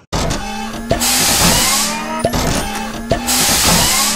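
Cartoon machine sound effect for a stamping press (the story's cloud compressor): a steady low hum with two long hissing blasts, one about a second in and one near the end, and sharp metallic clanks between them.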